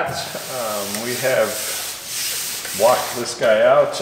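A palm rubbing across the sanded body-filler surface of a car trunk lid, a dry hiss most evident in the first half, as the panel is felt by hand for waves after block sanding. An indistinct voice is heard over it.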